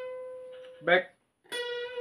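Electric guitar: a single high note picked and left to ring, fading out over about a second, then the same note picked again about one and a half seconds in and held.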